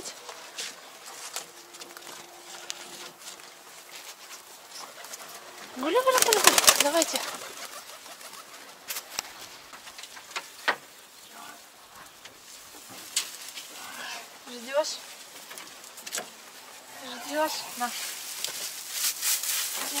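Pigeons cooing, with a louder pitched call about six seconds in and a few sharp knocks from the wooden rabbit hutches.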